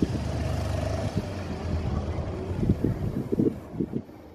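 Motorcycle ambulance's engine running steadily as it rides away, with gusts of wind on the microphone.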